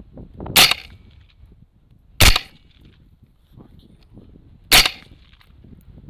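Three rifle shots, each a sharp crack with a short ringing tail; the second comes about a second and a half after the first, the third about two and a half seconds later.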